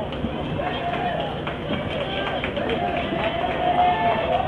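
Crowd of fans talking and calling out, several voices overlapping over a steady outdoor hubbub.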